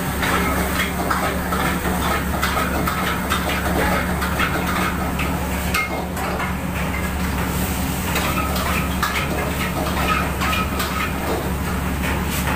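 Commercial kitchen wok station: a steady low hum from the gas wok burners and extraction hoods, under a continual clatter of metal utensils knocking and scraping against a wok.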